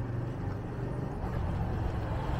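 Small motorbike engine coming up from behind, a low steady hum growing gradually louder.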